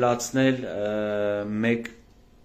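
A man's voice: a couple of quick syllables, then one long vowel held at a steady pitch for about a second, stopping shortly before two seconds in.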